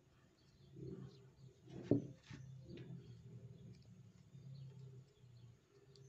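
Quiet crocheting: a metal crochet hook pulling thick cotton string through stitches, with a soft click about two seconds in and a few faint rustles, over a low steady hum.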